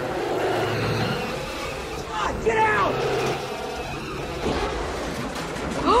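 Film soundtrack of a pickup truck driving over a lava flow: steady engine and tyre rumble, with a brief cry of voices about two seconds in.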